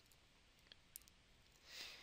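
Near silence, with two or three faint clicks about a second in and a soft breath near the end.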